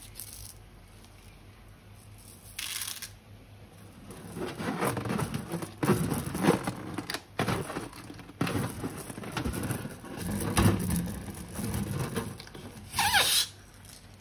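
Hands squeezing and kneading a rubber balloon filled with slime and beads: irregular squishing, crackling and rubbery rubbing. Near the end comes a short louder burst with a tone that falls in pitch.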